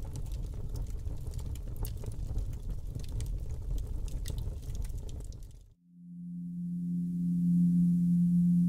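Intro sound design: a low rumbling noise with scattered crackles, which cuts off suddenly about three-quarters of the way in. A steady low synthesizer tone then swells in and holds.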